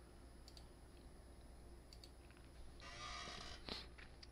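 Near silence with a few faint computer mouse clicks spread through it, and a short soft rushing noise about three seconds in.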